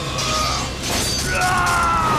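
Anime battle sound effects for a spear attack: short bursts of hiss-like noise, then a descending electronic whine starting about one and a half seconds in, over a steady background music score.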